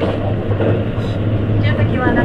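Running noise heard inside a JR East E257 series limited express car at speed: a steady low hum over the even rumble of the wheels on the rails.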